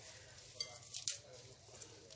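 Faint rustling of escarole leaves being pulled apart and torn by hand, with a few small crisp snaps about half a second and a second in.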